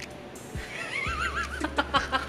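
A high, quavering whinny-like cry lasting about a second, starting about half a second in, followed by a few short knocks near the end, over a steady low hum.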